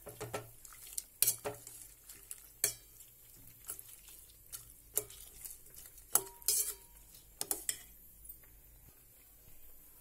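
Metal slotted spoon clinking and scraping against a stainless steel pot while stirring chunks of mutton, lentils and water: about a dozen irregular clinks, the sharpest in the middle of the stretch.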